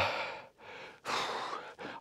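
A man's heavy breathing between sentences: a softer breath out, then a longer and louder one about a second in, the breathlessness of climbing a steep snowy slope.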